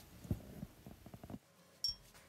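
Faint room tone with a few soft knocks in the first second, then a single short, sharp click near the end.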